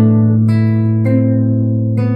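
Nylon-string classical guitar played fingerstyle: a low bass note rings under a chord while two higher notes are plucked in turn, about half a second and a second in, all left to sustain together.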